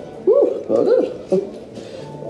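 Several short whining vocal sounds in quick succession, each rising and falling in pitch.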